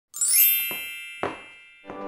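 A bright chime sound effect: a shimmering strike with many high ringing tones that fade over about a second, then a second, fuller strike about a second later, with music just starting at the very end.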